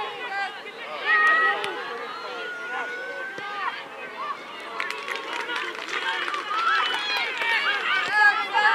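Footballers' voices shouting and calling across the pitch during open play, several overlapping, with one long drawn-out call about two seconds in.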